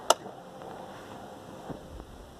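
Ignition key switch of a Honda FourTrax 420 ATV being turned to the on position: one sharp click about a tenth of a second in, followed by a faint tick near the end.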